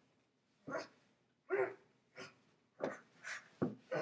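A string of about six short barks, spaced irregularly and coming faster near the end.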